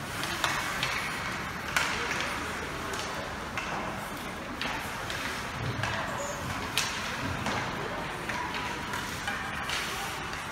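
Ice hockey play on an indoor rink: a steady wash of skate blades on ice and indistinct voices, broken by several sharp clacks of sticks on the puck at uneven intervals.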